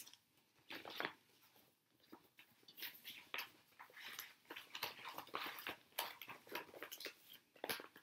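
Faint, irregular rustling and crinkling of cross-stitch projects and their wrappings being handled and moved about, in a scatter of soft crackles.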